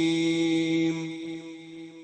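A male Quran reciter's voice holding one long, steady chanted note, which fades away from about a second in.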